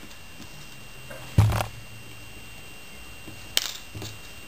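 Small handling sounds of threading a bead onto thin craft wire at a tabletop: a dull knock about a second and a half in, and a sharp click near the end.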